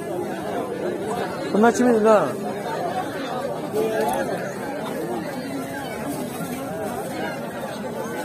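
Several people talking at once, with one man's voice louder for a moment about a second and a half in.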